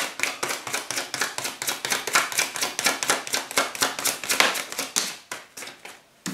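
A tarot deck being shuffled by hand: a quick run of crisp card clicks, about six or seven a second, trailing off near the end.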